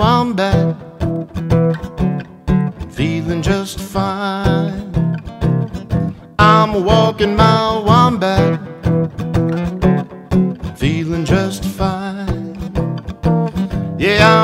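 Acoustic guitar strummed in a steady country rhythm, with a man's voice singing in short phrases over it.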